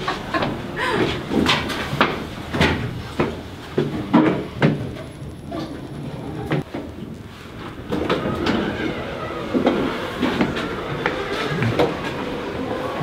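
Passenger lift's sliding steel doors opening and closing, with clunks and knocks from the doors and car, over shop background noise.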